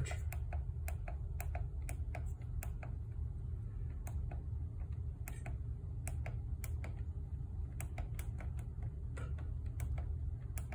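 Plastic push-buttons on an X32 Compact mixing console being pressed one after another, an irregular run of sharp clicks about two or three a second. A steady low hum sits underneath.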